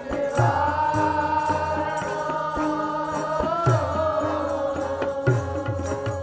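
Sikh Gurbani kirtan: held, gently wavering sung notes with harmonium, and tabla strokes keeping a steady rhythm underneath.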